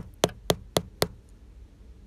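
Quick fingertip taps on a phone's touchscreen: five sharp knocks about four a second, stopping about a second in. The screen gives no response to them.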